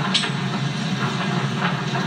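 Press-hall room noise as a news conference breaks up, heard through a television speaker: a steady low hum with scattered clicks and rustles.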